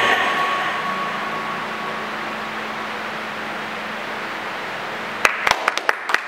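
The dance track's last sustained sound dies away slowly, a fading wash with a faint held note. About five seconds in, a handful of sharp hand claps break out: the start of applause at the end of the number.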